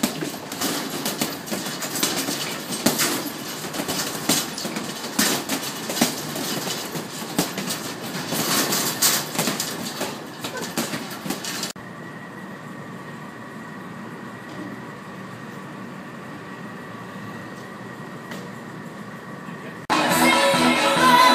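Gloved punches landing on hanging heavy bags: many quick, irregular thuds over a noisy room. About twelve seconds in, the sound cuts off abruptly to a steady hum with a faint high whine.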